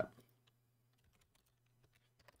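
Faint, irregular clicking of a computer keyboard and mouse being used, over a low steady hum.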